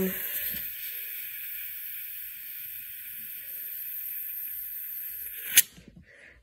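Green gas hissing steadily from an upside-down can into an airsoft gun magazine's fill valve as the magazine is charged. The hiss stops with a sharp click shortly before the end.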